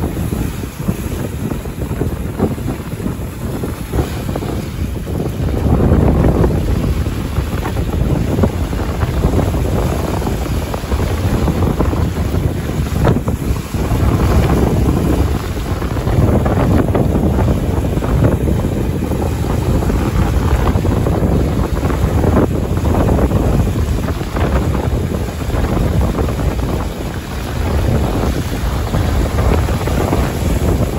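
Strong wind buffeting the microphone over the rush of water churning in the wake of a Mini 6.50 racing sailboat moving fast. The noise is continuous and gusty, swelling and easing every few seconds.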